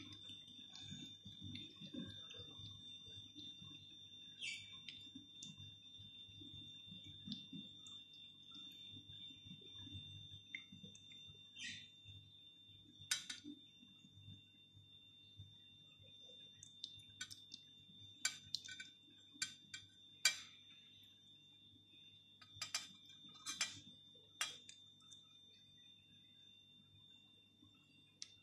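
Faint pouring of a thick creamy liquid from a steel saucepan over a spoon into a cake tin, then light, scattered clinks of a metal spoon against the pan and tin as the last of the mixture is scraped out, from about halfway on.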